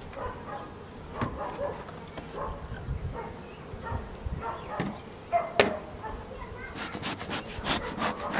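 Wooden hive frames and hive parts being handled, with scattered light knocks and scrapes of wood, one sharp knock about halfway through, and a quick run of rustling clicks near the end.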